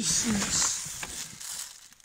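Paper seed bag rustling as a hand digs in and scoops out a handful of tiny winter camelina seed; the rustle fades away after about a second.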